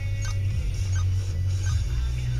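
Background music with a heavy, steady bass and a light beat, about three ticks a second.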